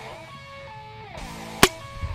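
A single sharp pop about a second and a half in: the air-burst rocket's stacked red and white membrane boosters bursting under hand-pumped air pressure as the rocket launches. Guitar background music plays throughout.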